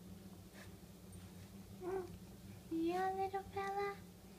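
Baby cooing: a short coo about two seconds in, then two longer, steady, high-pitched vowel coos near the end.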